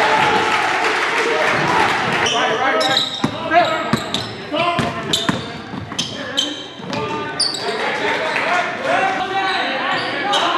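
Live game sound of basketball on a hardwood gym floor: the ball bouncing again and again as it is dribbled and passed, under players' and spectators' shouts.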